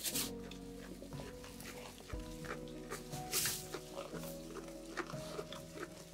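Background music with sustained chords that change about every two seconds. Over it, sheep eat hay with sharp rustles and crunches, loudest at the start and about three seconds in.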